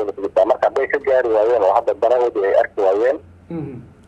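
Only speech: a man talking, with a short lull about three seconds in.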